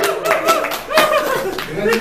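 A few sharp hand claps, the loudest about a second in, mixed with laughter and voices.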